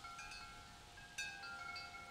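Faint chimes ringing: several clear, high tones sounding together, with a fresh strike about a second in.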